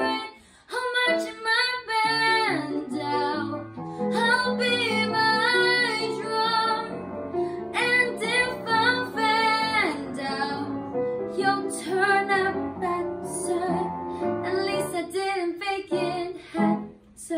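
A young female singer singing a solo song over instrumental accompaniment, in sung phrases with held notes, some of which fall away at the ends of phrases.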